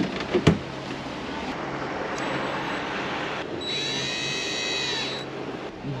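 Cordless drill running in steady bursts, its motor whirring, with a higher-pitched whine that rises, holds for about a second and a half and falls away near the end.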